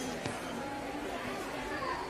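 Faint, steady background hubbub inside a store: distant voices murmuring under the room's ambience.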